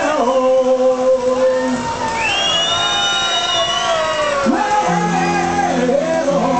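Live rock band playing, with a voice singing long held and sliding notes over sustained chords.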